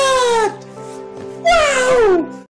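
Two drawn-out cat meows, each falling in pitch. One comes at the start and the other about a second and a half in, over steady background music.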